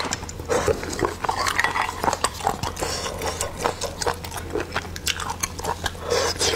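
Close-miked chewing and sucking of river-snail meat picked from the shell with a toothpick, with many short wet clicks and smacks.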